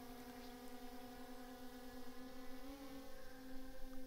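DJI Mini 3 Pro drone's propellers humming as it flies close overhead, a steady pitched drone with a slight wobble in pitch near three seconds in.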